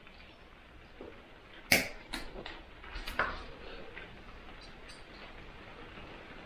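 Pliers cutting through steel coat-hanger wire: one sharp snap a little under two seconds in, followed by a few lighter clicks of metal.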